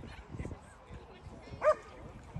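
A dog barking once, a single short sharp bark near the end, over faint distant shouting from the players.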